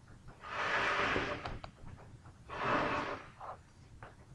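Two hissing breaths, each about a second long and about two seconds apart, with a few light computer-mouse clicks between them.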